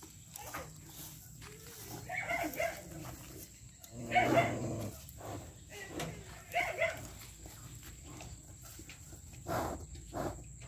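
A dog barking in short bursts: a couple of barks about two seconds in, the loudest a couple of seconds later, and two more shortly after.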